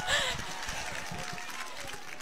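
A lull with faint, distant voices of an outdoor gathering, and a soft voice briefly at the start.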